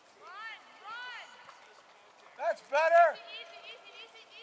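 People's voices calling out: two short calls, each rising and falling in pitch, in the first second, then two louder calls about two and a half to three seconds in.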